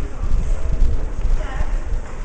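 Low, uneven rumble of handling noise on a handheld camera's microphone, with knocking like footsteps and faint voices in the background.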